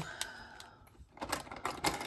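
Small clear plastic packet being handled and worked open by hand: soft plastic rustle, then a run of sharp crinkling clicks from about a second in.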